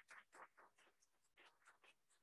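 Near silence with a few faint, irregular soft taps and clicks.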